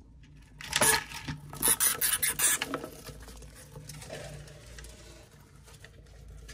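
Hamsters scuffling in a fight, a scrabbling rattle of claws and seeds against a plastic tray. It comes in two loud bursts, about a second in and again around two seconds in, then settles to quieter rustling.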